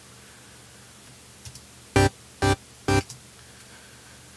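Three short, bright synth stabs about half a second apart, played from a Native Instruments Massive patch of three saw-wave oscillators tuned to the root, seven semitones up and nineteen semitones up, with the top oscillator turned down so it is not too harsh.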